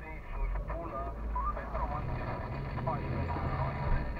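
A person talking, with the car's steady low engine and road hum underneath, heard inside the car.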